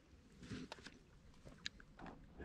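Near silence, with a few faint clicks, the sharpest about one and a half seconds in.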